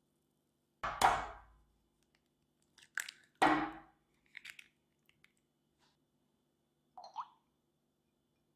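A raw egg knocked twice against a hard edge to crack its shell, two sharp knocks about two and a half seconds apart, followed by small soft clicks as the shell is pulled open over the jug. Near the end comes a light glass clink.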